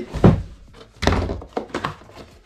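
A cardboard filament box set down on a desk with a thunk, then a run of knocks and rustles as a box is handled and its flap opened.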